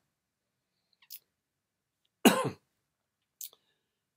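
A man coughing once, briefly, a little after halfway, with a faint breath or sniff before and after in an otherwise quiet room.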